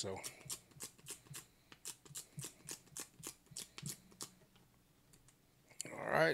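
Dust-absorber sticker dabbed against a phone's glass screen, making quick, light sticky ticks about four or five a second, which stop after about four and a half seconds.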